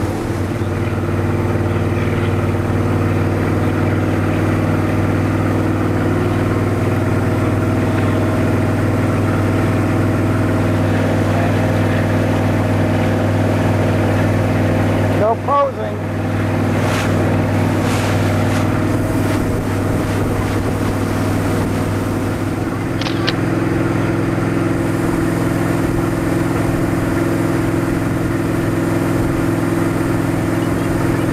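Motorboat engine running steadily under way, heard from on board over the rush of the wake, with a brief dropout about halfway through.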